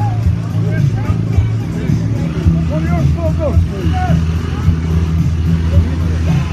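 Two dirt-bike engines running at low revs, barely above idle, as the bikes crawl along in a slow-riding contest, under loud crowd chatter.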